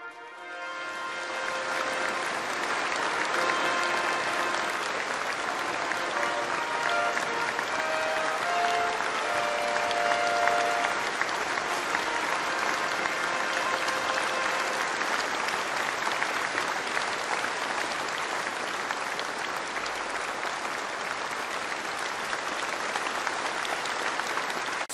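A large hall audience applauding steadily, with band music playing under the clapping through the first half and then fading, leaving the applause alone.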